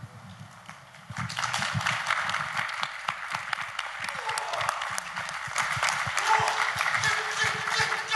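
Audience applause, starting about a second in and going on steadily, many hands clapping at once.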